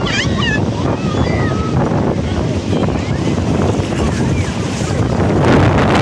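Wind noise on the microphone over the wash of shallow sea surf, with splashing near the end as a child slaps the water with his hands.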